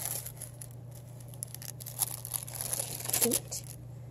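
Tissue paper crinkling and rustling in a few short scrapes as a hand moves it inside a doll's box, over a steady low hum.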